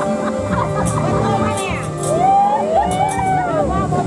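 Lao folk music: a khaen (bamboo mouth organ) holding sustained chords under light percussion, with high calls gliding up and down over it from about halfway through.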